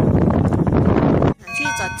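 Wind buffeting a phone's microphone while cycling, a loud steady rumble that cuts off suddenly about one and a half seconds in. A woman's voice follows, with a few held electronic-sounding tones under it near the end.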